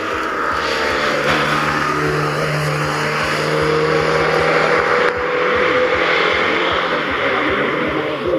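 Fiat 125p rally car's four-cylinder engine revving hard as the car accelerates through a bend and away down the stage.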